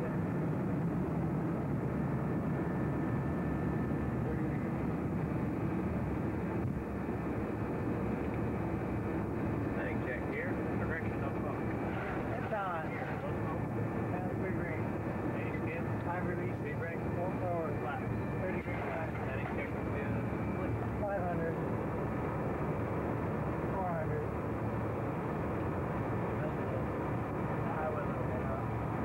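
Steady cockpit noise of a jet airliner in flight, a constant drone of engines and rushing air. Muffled, indistinct voices come through over it from about ten seconds in.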